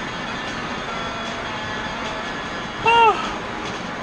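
Steady road and engine noise inside a moving car's cabin. About three seconds in, a short pitched sound rises and falls once.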